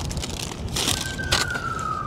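Wind rumbling on the microphone, with two sharp knocks near the middle, and from about halfway in a siren wailing as one long tone that slowly falls in pitch.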